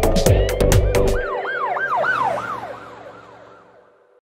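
Dance-beat music with drum hits stops about a second in. A cartoon police-siren sound effect follows: a quick rising and falling wail, about three cycles a second, fading out.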